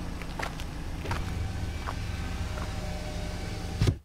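A car engine running steadily with a low hum, with a few light clicks and a thump just before the sound cuts off near the end.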